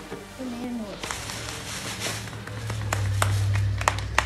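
Light applause from a few people clapping, starting about a second in, with a low steady hum underneath.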